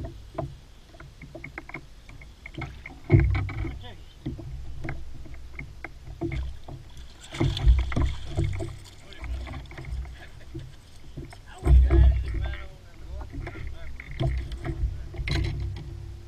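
Water splashing near the middle as a hooked largemouth bass is scooped into a landing net beside the boat, among bursts of low rumble on the microphone and scattered knocks and clicks.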